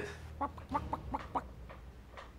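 Brown hen clucking: a quick run of short clucks that fades out near the end.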